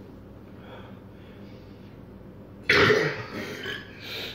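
A loud burp that starts suddenly nearly three seconds in and trails off over about a second, brought up after gulping carbonated cola fast.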